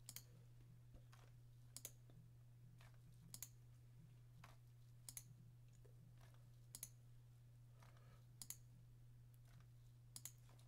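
Faint computer mouse clicks, each a quick press-and-release pair, repeating about every 1.7 seconds over a steady low hum.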